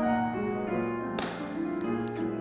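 Grand piano being played: slow, sustained chords and low notes ringing, changing every half second or so. A sharp tap cuts across them a little after a second in.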